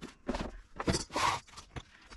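A few short knocks and scrapes of kitchenware being lifted off a wooden cabinet shelf, the loudest about a second in.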